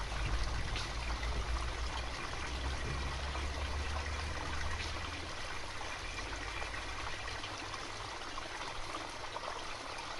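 Small stream running and trickling steadily, with a low rumble under it that is strongest in the first half.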